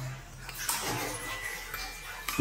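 Water splashing in a plastic basin as a baby monkey moves about in it, starting about half a second in.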